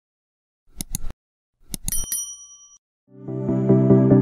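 Subscribe-button sound effect: two quick mouse clicks, then two more followed by a short bell ding. Background music with a steady pulse fades in near the end.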